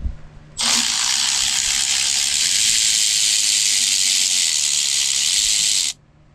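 Milwaukee cordless electric ratchet running steadily for about five seconds, spinning the front shock absorber's upper mounting nut off through an access hole, then stopping suddenly.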